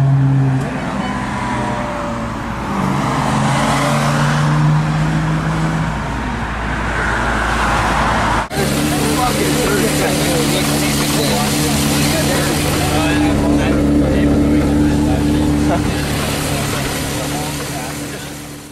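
Sports car engine running at low revs in slow street traffic, its note stepping up about three seconds in; after a sudden cut, a Porsche Carrera GT's V10 idling steadily, heard close to the open engine bay.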